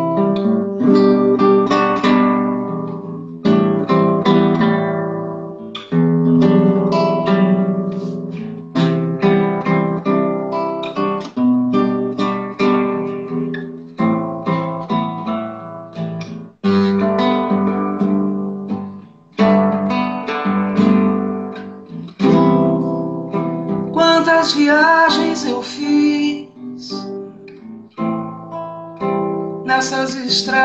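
Solo acoustic guitar playing a song introduction: chords strummed and plucked in phrases, each ringing out and fading before the next attack.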